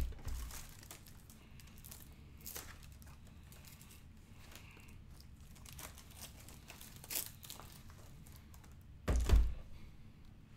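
Large Lego brick-built sections being handled on a table: a knock at the start, scattered plastic clicks, and a heavy thump with a short clatter near the end as a section is set down.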